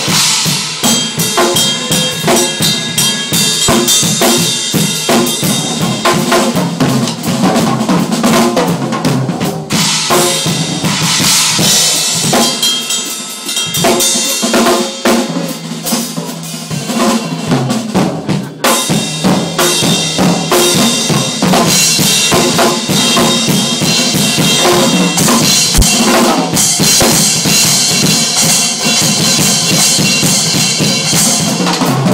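Drum solo on a Tama acoustic drum kit: fast bass drum, snare, tom and cymbal playing. It eases into a lighter passage about halfway through, then builds back with heavy cymbal wash toward the end.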